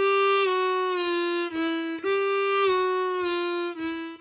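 Diatonic harmonica played in one hole: a long draw note, bent down a half step and then a full step, stepping down to a lower note. Back at the top note about halfway through, the descending bend pattern is played again.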